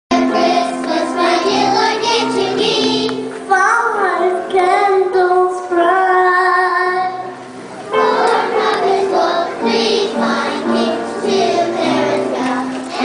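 A group of young children singing a Christmas song together; about three and a half seconds in, a single child's voice sings alone with a wavering pitch for about four seconds, and the whole group comes back in at about eight seconds.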